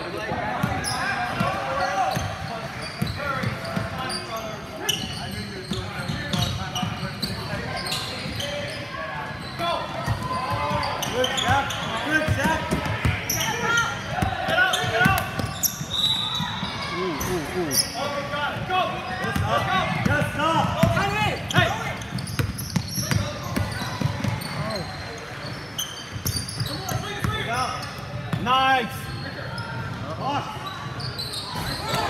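Basketballs bouncing on a hardwood gym court, with many short sharp thuds, under indistinct voices of players and spectators echoing through a large hall.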